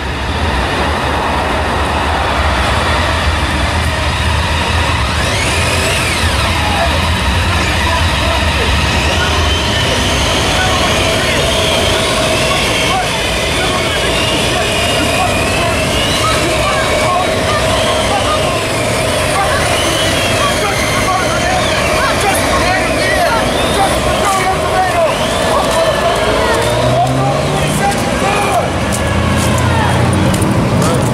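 Police motorcycles and patrol cars pulling away and riding past in a column, their engines running steadily. Near the end one engine note rises as a vehicle accelerates.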